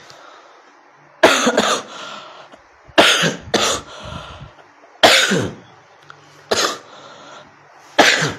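A man coughing in a fit: loud coughs in pairs about a second and three seconds in, then single coughs near five and six and a half seconds, with another starting at the very end.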